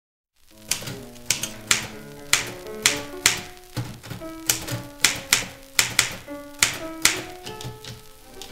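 Manual typewriter keys striking one letter at a time, about eighteen sharp clacks at an uneven pace, over music with held notes.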